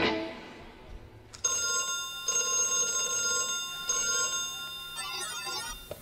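A synthesized telephone-style ring tone played through the PA as the intro of the next song. A steady chord of high electronic tones begins about a second and a half in and breaks off briefly twice. A quick run of chirping tones follows near the end.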